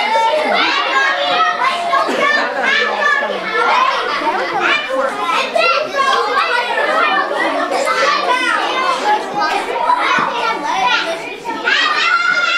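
Many children's voices talking over one another, a continuous din of overlapping high-pitched chatter.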